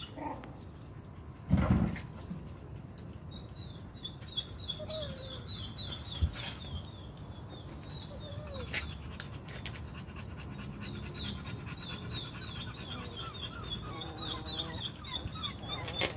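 Young American Pit Bull Terrier puppies giving a few faint, short whimpers, with a dog panting. A high chirp repeats a few times a second through most of the stretch, and a short loud noise comes about two seconds in.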